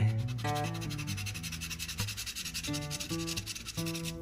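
A coin scraping rapidly back and forth over a scratch-off lottery ticket, rubbing off the silver coating in quick strokes, with background music playing underneath.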